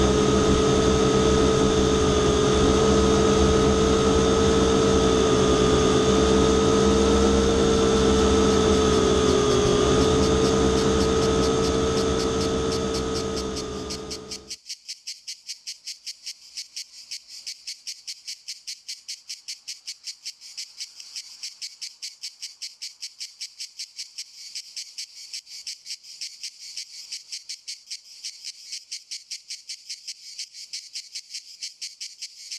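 A loud, steady droning hum with several held tones, which fades over a couple of seconds and stops about halfway through. It gives way to high-pitched, cricket-like chirping pulsing evenly at about three chirps a second.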